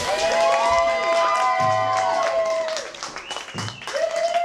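A live rock band's song ends on a held final note, with the audience clapping and cheering. The music drops away after about three seconds, leaving the clapping.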